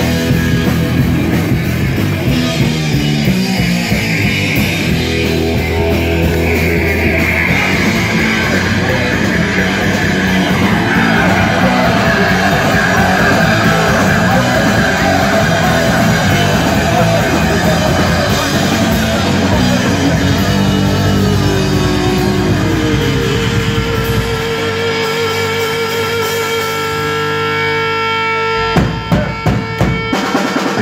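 Live rock band playing loud through amplifiers: electric guitar, bass guitar and drum kit. About twenty-four seconds in, the bottom end drops away to a held guitar note, then sharp drum hits come back in near the end.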